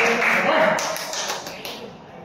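A person's voice in a large hall, loudest in the first second and fading, followed by several light taps of a celluloid table tennis ball.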